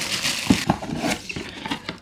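Clear plastic wrap crinkling as it is pulled off a cardboard box, with a few light knocks and scrapes of the cardboard as the box is opened.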